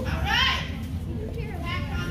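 Children's voices: a high rising call about half a second in, then talking, over a steady low hum.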